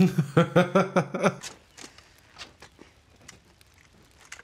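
A man laughing, a quick run of 'ha' pulses lasting about a second and a half, then faint scattered clicks and rustles.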